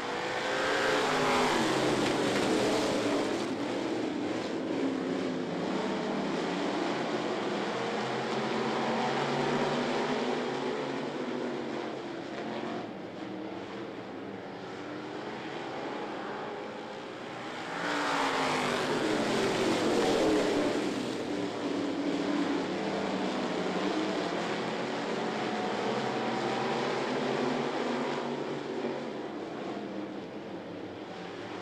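A pack of dirt-track street stock cars' V8 engines running together, swelling loud as the field passes the microphone about a second in and again about 18 seconds in, the engine pitches sweeping down as the cars go by.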